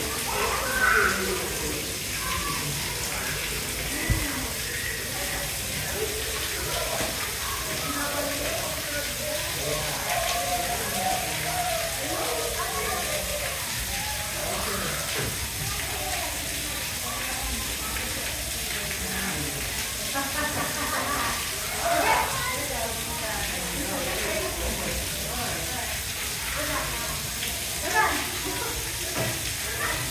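Indistinct chatter of several people's voices over a steady background noise, with no clear animal calls.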